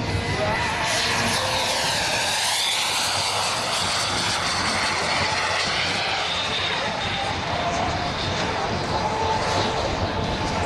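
Radio-control model jets flying past, their engines whining steadily over a rushing roar, the pitch sweeping down and back up as they pass.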